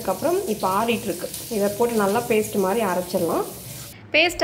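A woman's voice talking over a steady sizzling hiss from cooking.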